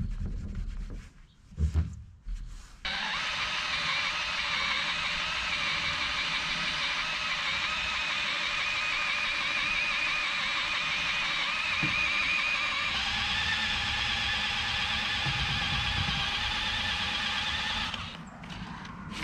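A handheld power tool starts suddenly about three seconds in and runs steadily under load with a high buzzing whine, whose pitch shifts about ten seconds later.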